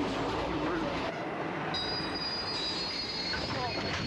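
Train running on the rails, heard from inside a passenger carriage, with a high steady wheel squeal starting a little under halfway in.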